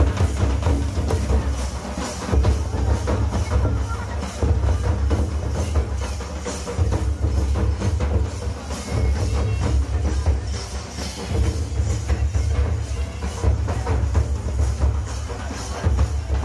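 Large nagara drums and a barrel drum beaten with sticks in a fast, steady, repeating rhythm of heavy low strokes, the beat running on without a break.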